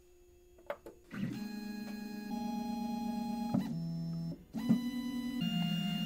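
Makera Z1 desktop CNC mill starting a job: two small clicks from the front start button, then about a second in the machine's motors begin a steady whine. The whine steps to a new pitch every second or so, with a brief break near the middle.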